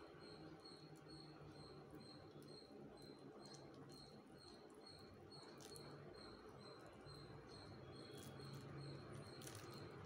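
Near silence: room tone with a faint high-pitched chirp repeating about two or three times a second, and a few faint soft clicks.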